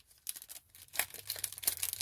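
Foil wrapper of a Topps UK Edition baseball card pack being torn open by hand, crinkling and tearing, faint at first and louder from about a second in.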